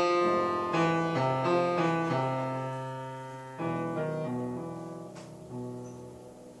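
Grand piano playing jazz chords. Each chord is struck and left to ring and fade, with a quick run of chords in the first two seconds and a few more past the middle.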